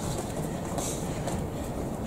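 Steady low rumble of gym room noise with a few faint soft scuffs as the boxers move around the ring canvas between exchanges; no punch lands loudly.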